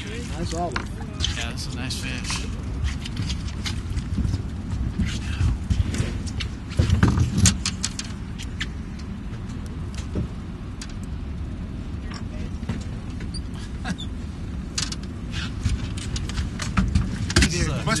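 Steady low rumble aboard a fishing boat at sea, with scattered sharp clicks and faint voices in the background.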